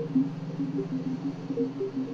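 DIN Is Noise software synthesizer playing a waveform made from the bit pattern of pi. A steady low buzzing drone sounds throughout, with short higher notes flickering on and off above it, several each second.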